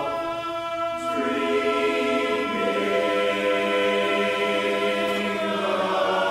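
Men's barbershop chorus singing a cappella in close four-part harmony, holding long sustained chords. The chord shifts about a second in, again a little later, and once more near the end.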